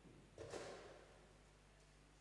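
Near silence: room tone with a low steady hum, broken by one brief soft noise about half a second in that fades quickly.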